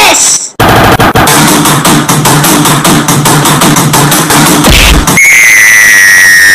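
Heavily distorted, very loud cartoon soundtrack audio: a harsh, dense clatter with fast rhythmic pulses for about four seconds, then a sustained high whistle-like tone that sags slightly in pitch near the end.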